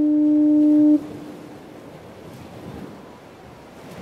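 Foghorn blast: one steady low note with fainter overtones above it, which cuts off sharply about a second in and rings on briefly. After that, only a faint, even rush of background noise.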